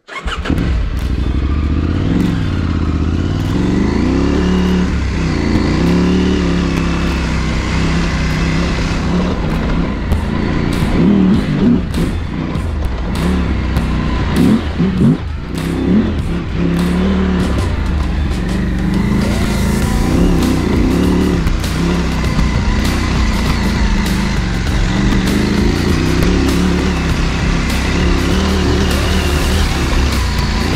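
Adventure motorcycle engine running under load on a rough gravel climb, the revs rising and falling again and again with throttle and gear changes, with scattered sharp knocks through it.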